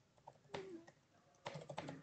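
Faint typing on a computer keyboard: a single keystroke about half a second in, then a quick run of keystrokes in the second half.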